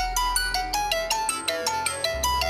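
A smartphone's default ringtone melody playing through the phone's speaker as the alert of a whistle-activated phone-finder app: a quick run of bright, bell-like notes, several a second, over a steady low hum.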